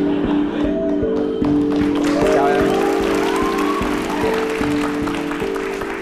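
A studio audience applauding over background music of sustained chords that shift every second or so, with a few voices calling out over it.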